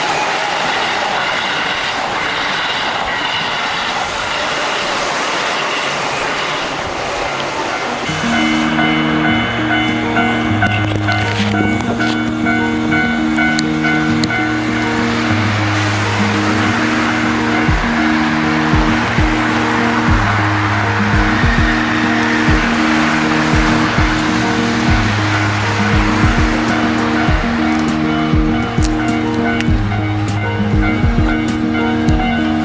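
For the first eight seconds or so, a Keihan electric train runs past close by with a steady noisy rumble. Then background music with a steady beat and a repeating bass line starts and carries on.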